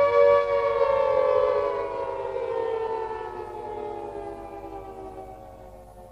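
Outro sound effect: a sustained pitched tone with many overtones that starts suddenly, slides slowly down in pitch and fades away.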